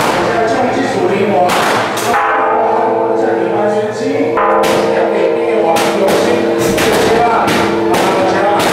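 Temple ritual music: repeated crashes of cymbals and gongs with drum strokes over held pitched notes, with crowd voices.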